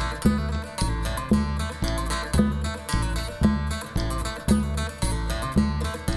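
Live acoustic folk trio playing an instrumental passage: strummed acoustic guitar over upright double bass and a hand drum, with a steady beat of about two low thumps a second.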